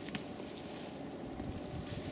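Quiet, steady outdoor background noise in a garden, with a faint click just after the start.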